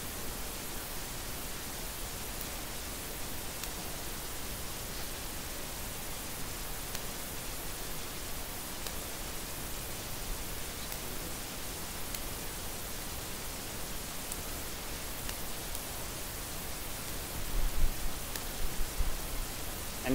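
Steady hiss of background noise, with a few soft low thumps near the end.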